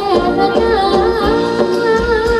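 Thai ramwong dance music from a live band: a singer's wavering melody over steady drums.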